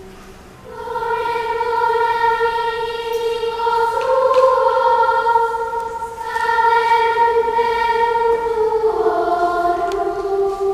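Children's choir singing slow, held notes of a sacred piece. The voices come in just under a second in, the line steps up briefly about four seconds in, breaks for a breath around six seconds, and drops lower near the end.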